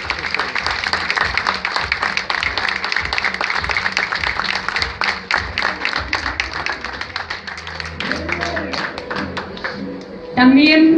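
Audience applauding: many people clapping at once, thinning out and fading near the end.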